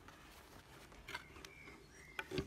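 Near silence, with a few faint clicks about a second in.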